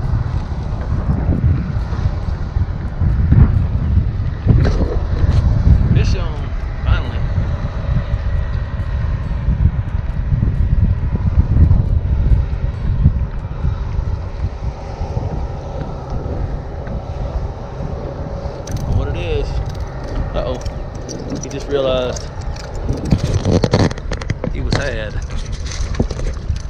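Wind buffeting the microphone: a loud low rumble that swells and eases throughout.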